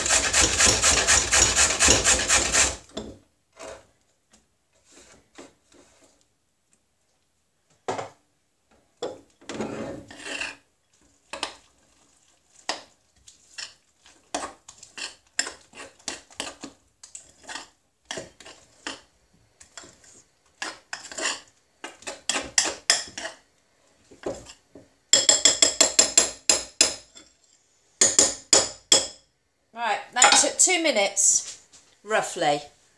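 Carrot grated on a metal box grater, fast rasping strokes for the first few seconds. Then a spoon stirring thick carrot cake batter in a glass mixing bowl: scattered scrapes and knocks, with two spells of quick, vigorous stirring near the end.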